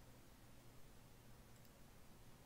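Near silence: faint room hum with a faint computer mouse click or two.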